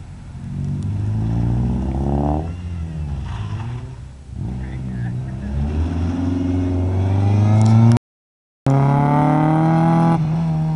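Car engine revving up and down repeatedly as the car is driven hard through a cone course, its pitch climbing on each acceleration and dropping when the driver lifts. About eight seconds in the sound cuts out abruptly for half a second, then returns at high revs and falls away.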